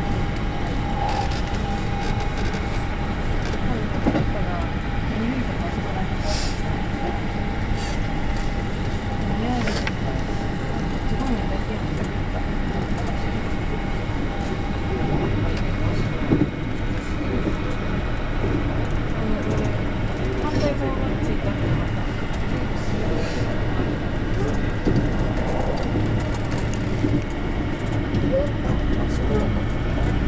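JR West 221 series electric train running at speed, heard from inside the front car: steady rolling noise of wheels on rail with scattered clicks. A thin steady whine sounds through the first half and drops out about halfway through.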